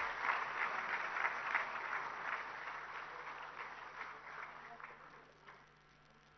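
Audience applause, dense clapping that fades away over about five seconds.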